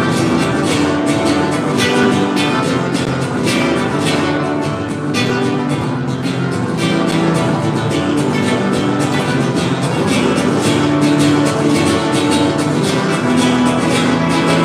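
Malambo music: an acoustic guitar playing under a fast, continuous run of percussive strikes, the solo dancer's zapateo footwork stamping and tapping on the stage floor.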